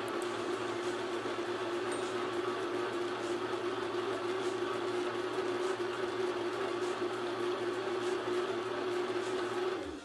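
Countertop blender running steadily on its low setting, puréeing a liquid jerk marinade, with a constant motor hum. It shuts off near the end.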